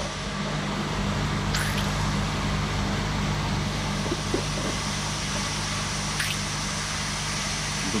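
Steady low mechanical hum with a noisy hiss from machinery running, such as a pump or fan. Two faint high falling whistles come through, about a second and a half in and again about six seconds in.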